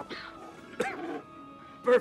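A small cartoon animal gives one short yip about a second in, over steady background music.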